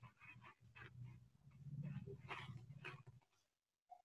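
Near silence: faint room tone with a low hum and faint indistinct sounds, fading out about three seconds in.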